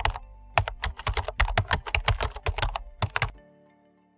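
Computer keyboard typing: a short run of keystrokes, a pause of about half a second, then a longer quick run of keystrokes that stops a little after three seconds in. Soft background music plays underneath.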